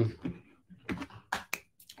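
A handful of separate, irregular clicks of computer keyboard keys in the second half of the pause.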